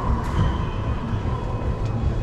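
Racquetball rally in an enclosed court: two sharp ball impacts about a second and a half apart, over a steady low rumble.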